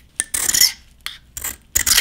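Razor blade scraped against a smartphone's metal side frame in three short scrapes. The longest and loudest comes about half a second in, a brief one a little past the middle, and another near the end.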